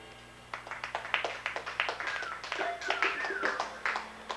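Scattered clapping from a small audience, with a few voices calling out, as a live rock song ends.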